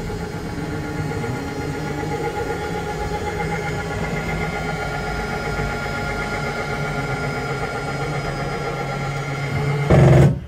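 Travel trailer's electric slide-out motor running steadily as it drives the slide room outward, a continuous hum with several held tones.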